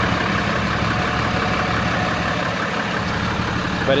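A repo truck's engine idling steadily, a constant low hum.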